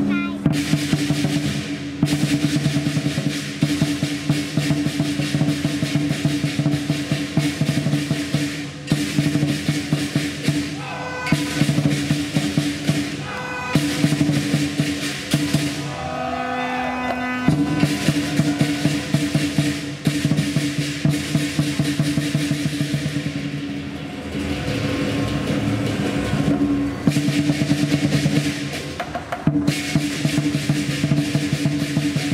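Lion dance percussion: a large drum beating fast with rolls, against clashing cymbals and a ringing gong. The beat thins out briefly a little past halfway, then picks up again.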